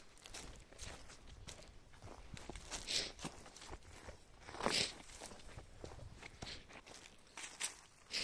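Footsteps crunching through dry grass and fallen leaves, uneven steps with a rustle of brush between them, the loudest about three seconds in and again near five seconds.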